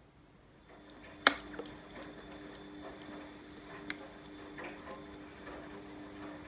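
A faint steady hum that comes in just under a second in, with one sharp click a little later and a few lighter clicks and taps, like handling noise.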